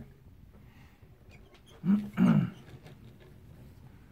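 A person coughs twice in quick succession, about two seconds in, against quiet room tone.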